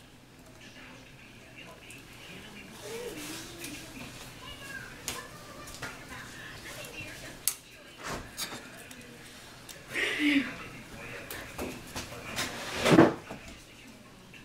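Scattered small clicks and knocks of craft tools, a jar and paper handled on a tabletop, with a sharper knock near the end. A faint voice is heard in the background a few seconds in and again past the middle.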